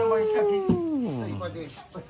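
A man's voice calling out one long high note that holds, then slides steeply down in pitch about a second in and fades.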